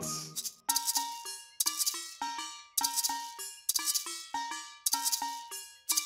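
Maracas shaken in a steady rhythm of about two shakes a second. Short ringing pitched notes sound with each beat.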